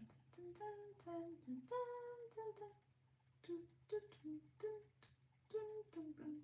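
A woman humming a tune softly, in short held notes that step up and down in pitch with little gaps between them, over a faint steady low hum.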